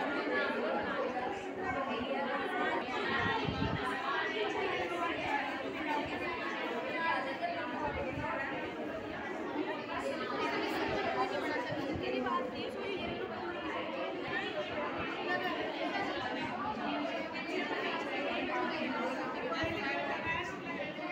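Indistinct chatter of many people talking at once, steady with no pauses.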